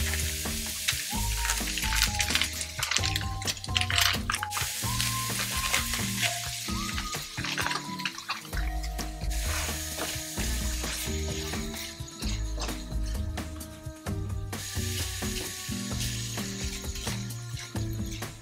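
Seafood paella sizzling in a nonstick frying pan while a silicone spatula stirs it, with short scrapes and taps against the pan. Background music plays over it.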